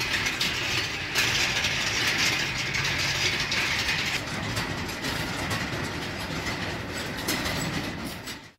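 A row of metal prayer wheels turning as people walk past and spin them: a steady rattling clatter, heaviest in the first half.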